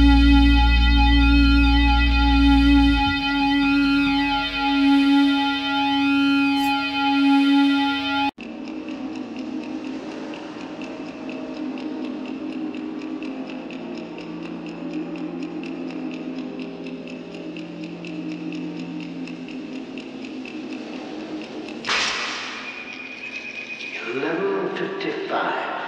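A distorted electric guitar and bass chord rings out with sweeping effects-pedal swirls, the low bass note dropping out about three seconds in, and the chord stops abruptly about eight seconds in. A quieter, steady, dark ambient passage follows, with a sudden bright swell near the end.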